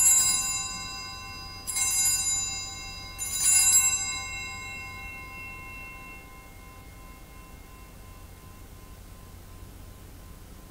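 Altar bells rung in three shakes about a second and a half apart, each ringing on with several bright tones that fade out by about halfway through. They mark the elevation of the consecrated host at Mass.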